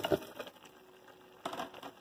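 Chopped red bell pepper pieces dropped into a pot of cooked vegetables, a brief soft patter near the start, then a quiet stretch and a single sharp knock about one and a half seconds in.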